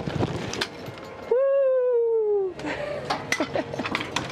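A person's voice giving one long high cry of about a second near the middle, falling slightly in pitch, with rustling and light knocks around it.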